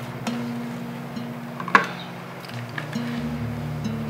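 Soft background film music of low, slowly changing guitar notes, with one sharp click a little under two seconds in.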